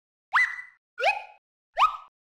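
Three quick rising 'bloop' cartoon sound effects, about three-quarters of a second apart.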